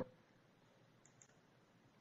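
Near silence: faint room tone between narrated sentences.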